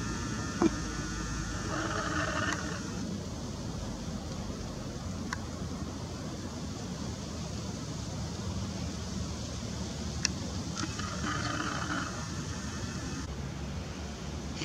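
Steady low outdoor rumble and hiss, with a few faint clicks.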